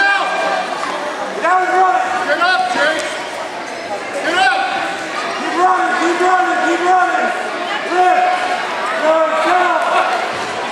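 High-pitched voices shouting short, repeated calls in a gym, not clear enough to make out as words.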